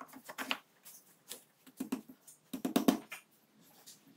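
Wooden blocks being set by hand into a wooden box jig: a run of irregular wooden knocks and clacks, the loudest cluster about three quarters of the way through.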